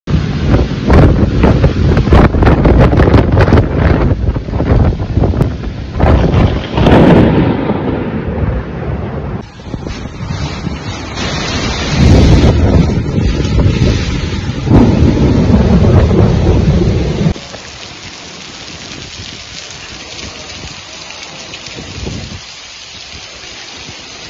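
Heavy rain and hail pelting down in a thunderstorm. It is loud and dense, with many sharp hits in the first seven seconds or so. After about seventeen seconds it drops abruptly to a quieter, steady rain hiss.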